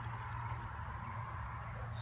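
Steady low background hum with a faint even hiss, and no distinct event.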